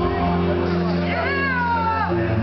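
Live rock band music: sustained electric guitar chords under a high, bent harmonica note that slides slowly down in pitch in the second half.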